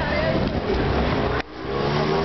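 Street traffic running past, mixed with the chatter of people at a café terrace. The sound cuts out suddenly and briefly about one and a half seconds in, then comes back.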